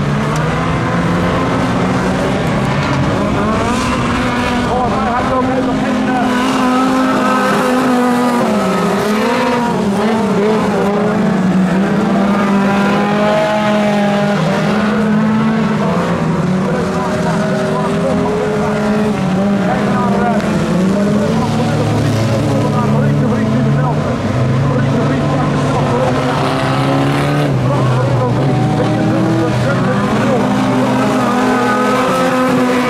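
Several small autocross race cars racing together on a dirt track. Their engines rev up and down in overlapping, continually shifting pitches as the pack accelerates and brakes through the turns.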